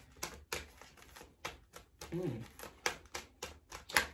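A deck of tarot cards being shuffled and handled, giving an irregular run of crisp clicks and snaps, the loudest just before the end.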